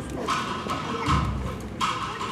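Drums of a military bugle-and-drum band beating a march cadence without the bugles: snare-drum strokes in a steady beat about every three-quarters of a second, with bass-drum thuds on some of the beats.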